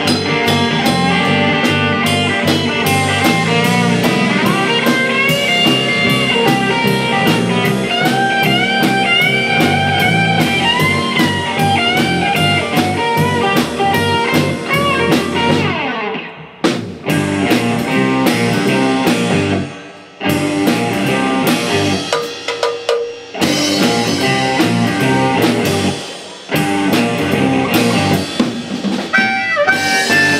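A small blues band playing live: an electric guitar lead with bending notes over drum kit, bass and keyboard. In the second half the band drops out briefly about three times between phrases.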